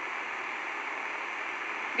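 Steady background hiss, even and unchanging, with no other sound.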